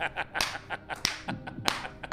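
Two men laughing into studio microphones in breathy bursts, with several sharp clicks or slaps among the laughs.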